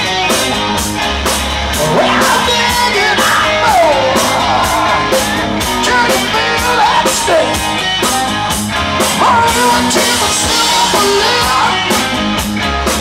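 Live rock band playing electric guitars, bass and drum kit at full volume, with bending melodic guitar or vocal lines over a steady beat.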